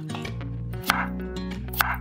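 Chef's knife chopping through raw potato onto a wooden cutting board: two sharp chops, about a second in and near the end, over steady background music.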